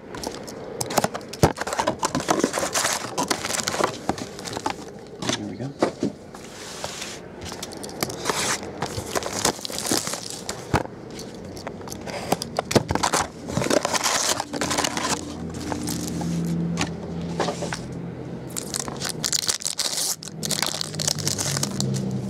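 Trading-card pack wrappers being torn open and crinkled, with rustling, scraping and clicks as the cards are pulled out and handled. A low hum joins in a little after the middle and again near the end.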